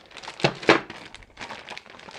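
Clear plastic parts bags crinkling as they are picked up and handled, with two sharper crackles about half a second in.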